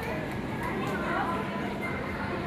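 Indistinct talking of adults and children in a reverberant hall, with a faint steady low hum underneath.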